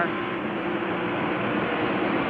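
NASCAR Winston Cup stock car's V8 engine at sustained full throttle, heard through the in-car microphone: a steady, unbroken engine tone over a dense wash of noise.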